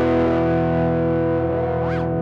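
Distorted electric guitar chord sustaining through a chain of Reaktor Blocks effects (Driver distortion, Chebyshev waveshaper, Euro Reakt tape delay), held steady with a rising pitch glide near the end.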